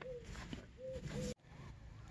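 A bird calling faintly: several short, low, arching notes, which stop suddenly about a second and a half in.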